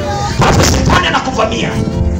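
Loud, distorted public-address sound: booming low thuds from backing music mixed with a man's amplified voice through the loudspeakers.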